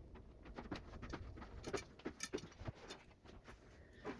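Faint, irregular light clicks and taps, a few a second, with a slight jingle.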